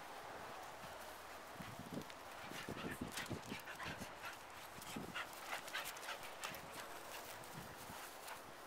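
Australian Cattle Dog and Norwegian Elkhound playing together, with a quick run of short dog sounds from about two and a half to six and a half seconds in.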